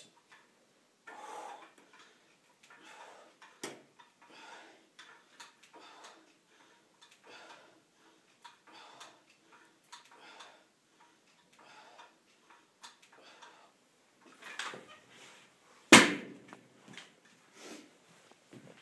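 Rhythmic forceful breaths, one about every second and a half, from a man pressing a pair of dumbbells on a flat bench, with a single sharp click about four seconds in. Near the end comes a loud clunk, the loudest sound, as the dumbbells are put down.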